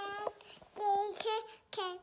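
A toddler's high, wordless sing-song vocalizing: three short held notes, the last one gliding down in pitch.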